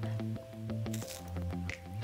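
Soft background music with held notes and a steady plucked beat. About a second in there is a short crisp crunch as a chocolate-coated wafer bar is bitten into.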